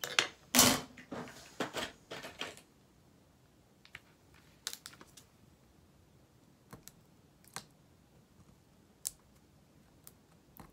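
Plastic vinyl sheet and cutting mat being handled and weeded: a cluster of sharp crinkling crackles in the first two and a half seconds, then scattered light clicks and ticks as a weeding tool picks at the cut vinyl.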